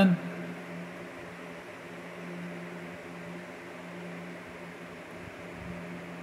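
A steady low mechanical hum with a faint hiss, unchanging throughout.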